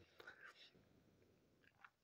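Near silence: room tone with a faint breath in the first half-second.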